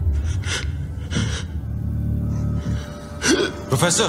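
Several sharp, breathy gasps from a man, the loudest two near the end, over a low, steady, tense film-score drone.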